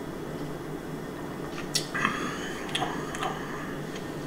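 A man sipping beer from a glass and tasting it, with a few faint mouth clicks and smacks in the second half over a steady room hum.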